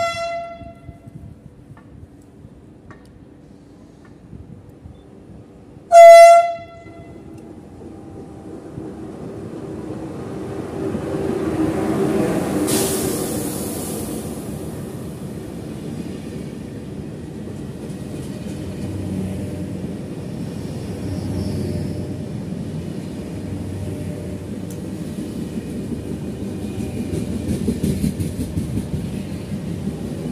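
SNCF TGV inOui high-speed train sounding its horn: a short toot, then a loud half-second blast about six seconds in. Its running noise then grows into a steady rumble as it comes alongside and runs past, with a brief hiss about thirteen seconds in.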